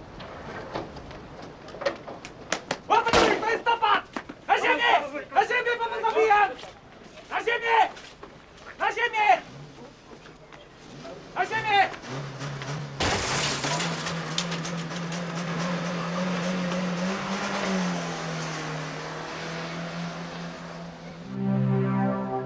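Men shouting in a violent struggle, with a single sharp bang about three seconds in. About thirteen seconds in, a sudden crash of noise gives way to a sustained, dramatic music drone.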